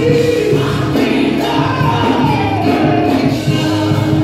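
Live gospel music: a man singing through a microphone over band accompaniment, with one long sung line falling in pitch through the middle.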